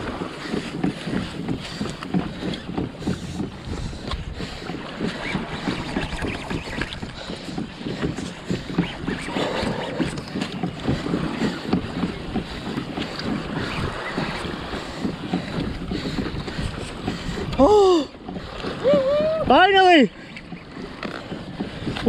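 Wind buffeting the microphone and choppy water around a kayak: a rough, continuous rush. Near the end a man's voice gives two short calls that rise and fall in pitch, louder than the rush.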